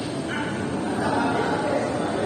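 Echoing din of a busy indoor badminton hall: voices mixed with crowd noise, and a thin, high squeak or whine that comes in about a third of a second in and is held for over a second.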